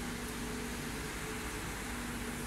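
Steady machinery hum and hiss in a water treatment plant hall, with a constant low drone.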